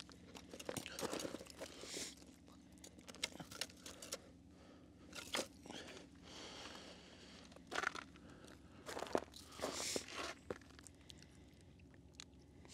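Faint, irregular crunches and rustles of boots, knees and clothing on crusted snow from someone crouched at an ice-fishing hole, hand-pulling line from a tip-up.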